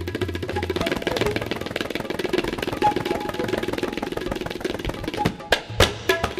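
Tabla playing a fast, dense run of strokes within the music, with a few sharper, louder strokes shortly before the end.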